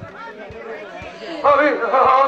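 Spoken stage dialogue through handheld microphones and loudspeakers: soft for the first second or so, then loud speech from about one and a half seconds in.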